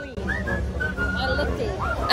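A whistled melody: short pitched notes and quick glides around one high pitch, over low background chatter and a steady low rumble.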